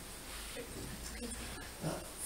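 Quiet lecture-hall room tone with a low hum and a faint voice murmuring, then a man begins to speak near the end.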